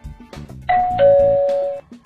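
A two-tone doorbell chime rings once, a higher 'ding' followed by a lower 'dong', ringing on for about a second before cutting off, over background music with a steady beat.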